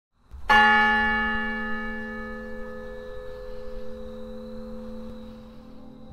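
A single bell struck once about half a second in, its many tones ringing on and slowly fading, with soft music tones entering near the end.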